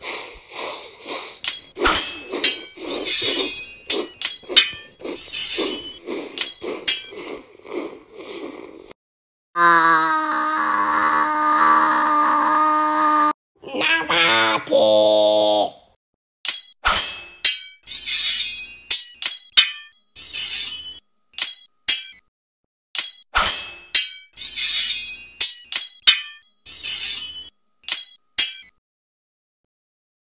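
Dubbed sword-fight sound effects: repeated metallic clinks and clangs of blades clashing. The clashes break off about ten seconds in for a long held, pitched cry or call, and a second, shorter one follows. More clashes come after.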